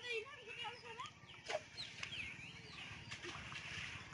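Faint bird calls: a wavering, cluck-like call in the first second, then scattered short high chirps.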